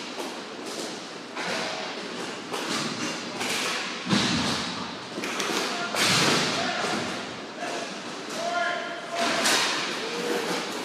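Inline roller hockey play in a rink: sharp clacks of sticks and puck, with two heavy thuds about four and six seconds in, and players' voices calling out near the end.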